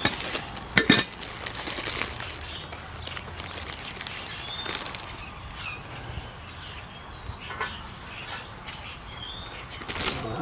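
Zip-lock plastic bag crinkling in short, sharp bursts at the start and about a second in as a cotton ball is pulled out, then quieter handling with scattered light clicks, and another crinkle just before the end as the hand goes back into the bag.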